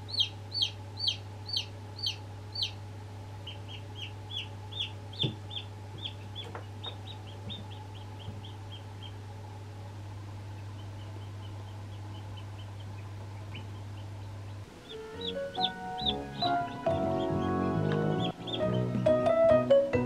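Newly hatched chicks peeping: loud, high, falling peeps about two a second for the first few seconds, then quieter, quicker peeping that carries on throughout. A steady low hum runs underneath until about three-quarters of the way in, when music starts.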